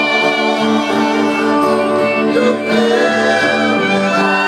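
Live folk-rock band: several men singing long held notes in harmony over strummed acoustic guitar and violin.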